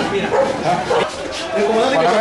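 Raised voices shouting and calling out in short, excited bursts.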